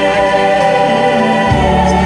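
Gospel choir singing live, holding sustained chords. A deep bass note comes in under the voices about one and a half seconds in.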